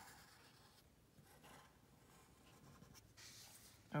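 Faint scratching of a black Sharpie marker's felt tip stroking across paper as it traces an outline; the marker is going dry.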